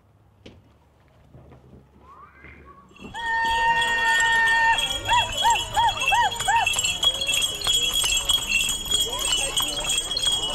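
Near silence for about three seconds, then the sound of a street parade: horses' hooves clopping on asphalt among crowd voices. Over it comes a high held tone and then five quick rising-and-falling tones.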